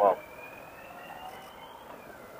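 Riding noise from a motorcycle picked up faintly through a helmet intercom: a low hiss with a thin whine rising slowly in pitch, just after a last spoken word.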